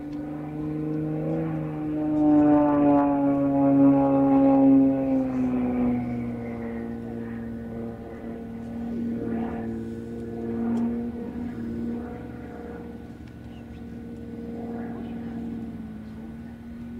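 Aerobatic propeller plane's piston engine and propeller droning overhead, loudest a few seconds in with the pitch falling slowly, then settling into a steadier, quieter drone.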